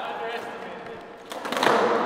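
Skateboard wheels rolling on a concrete floor, the rumble growing louder in the second half, with a couple of sharp board knocks about a second and a half in.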